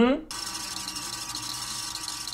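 Tape-rewind sound effect: a steady whirring hiss with a faint hum in it.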